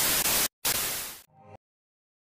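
TV static sound effect: a burst of hiss, cut by a short break about half a second in, then a second burst that fades and stops about one and a half seconds in.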